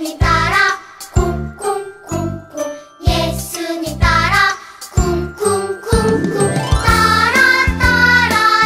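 A recorded children's praise song for an action song: a sung melody over bouncy backing with bright bell-like tinkling.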